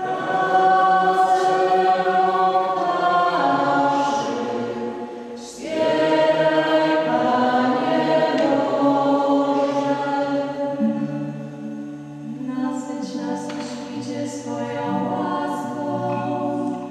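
Two young voices singing the responsorial psalm into a church microphone, in long held notes, with a short breath between phrases about five and a half seconds in.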